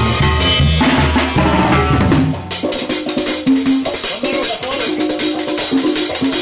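Live banda music: brass, tuba and a drum kit with cymbals playing together. About two and a half seconds in, the low bass line drops out and the drums and horns carry on.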